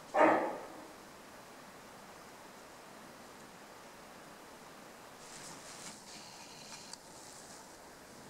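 A wapiti bull gives one short, loud call, about half a second long, just after the start, falling in pitch. After it there is only faint bush background, with a faint high hiss for a couple of seconds past the middle.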